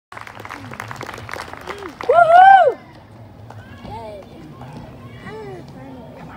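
Small outdoor audience cheering a performer on: a patter of hand claps, then one loud whoop that rises and falls about two seconds in, followed by a few shorter calls and shouts.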